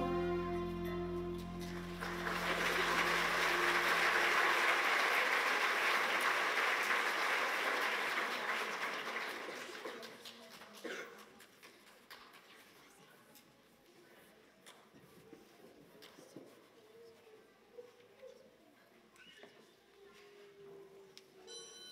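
The last held chord of a choir song dies away in the first few seconds as audience applause rises. The applause runs until about ten seconds in, then fades to a quiet hall with a few scattered small knocks.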